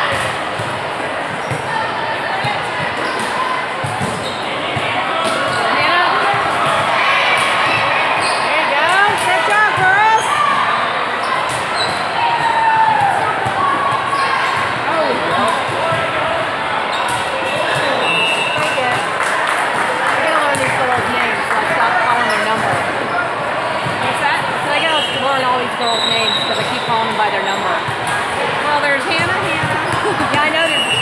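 Indoor volleyball being played in a large, echoing sports hall: the ball is struck again and again on serves, passes and hits, with players' and spectators' voices calling out around the court.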